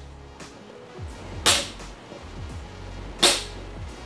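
A folding floor chair's adjustable backrest hinge clacks twice as the backrest is raised, once about a second and a half in and again about three seconds in. Background music plays underneath.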